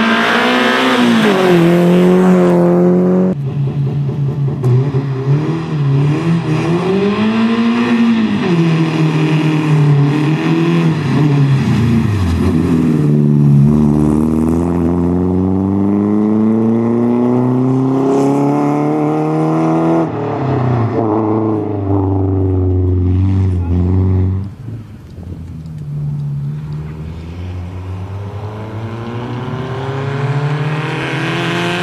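Renault Clio Sport rally car's engine revving hard, its note climbing under acceleration and dropping at each gear change or lift of the throttle, over and over as the car drives past and away.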